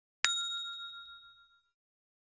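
A single notification-bell ding sound effect as the animated bell button is clicked: one sharp strike ringing on two clear tones and fading out over about a second and a half.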